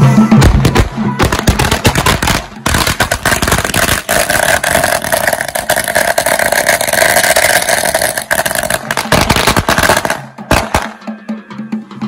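A long string of firecrackers going off in a rapid, continuous chain of sharp cracks for about ten seconds, stopping shortly before the end. Band music with drums is heard just as the chain starts and again after it ends.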